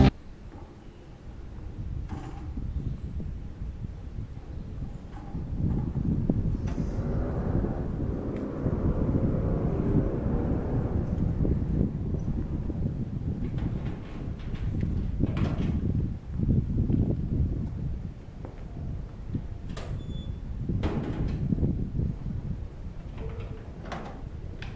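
A metal sliding garage gate being pushed open, rumbling along its track with several sharp metallic clanks.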